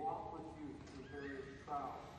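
A man speaking into a podium microphone over a public-address system. His voice rises in pitch and gets louder near the end.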